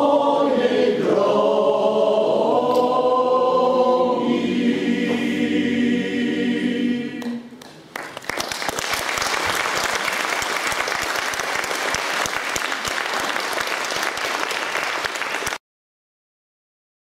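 Men's choir singing a cappella, the song ending about seven seconds in; then audience applause, which cuts off abruptly near the end.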